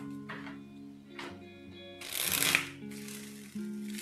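Tarot cards shuffled by hand, with a louder burst of riffling about halfway through, over soft lo-fi background music.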